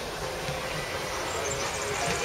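Steady outdoor background noise with a low rumble, with faint distant voices.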